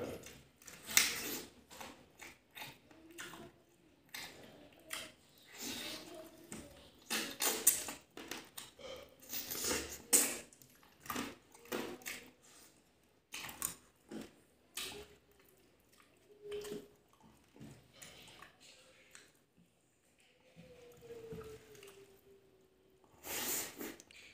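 Close-miked eating of a fried fish head by hand: wet chewing, sucking and smacking mouth sounds in irregular bursts, with a few brief hums, one falling in pitch, toward the end.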